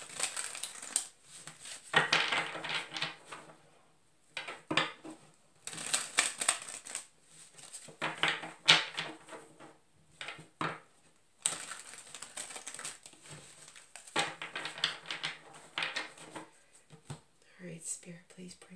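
A deck of tarot cards shuffled by hand, the cards rustling and clicking against each other in a string of short bursts with brief pauses between them.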